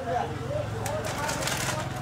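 Voices talking in the background over a steady low hum, with a short burst of rustling or scraping noise about a second in.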